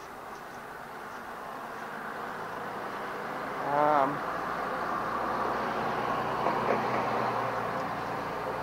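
Steady vehicle-like noise that grows louder over the first few seconds and then holds, with a brief voiced sound about four seconds in.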